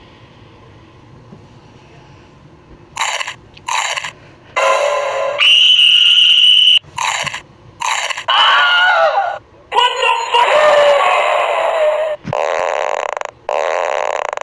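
A person's voice making loud wordless noises in short separate bursts, grunts and cries, with one held high shriek about five and a half seconds in. The first three seconds hold only a low steady hum.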